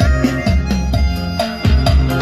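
Recorded music with a prominent deep bass drum beat, played through a 12 V mini amplifier driving BMB loudspeakers and a subwoofer.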